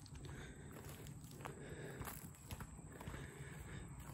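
Faint footsteps of a person walking on grass and leaf litter, a soft irregular crunching over a low rumble.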